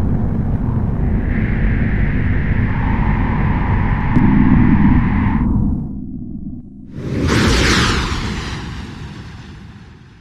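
Outro sound design for an animated logo: a low rumbling drone with a steady higher tone over it, breaking off about five and a half seconds in, then a whoosh that swells and fades out.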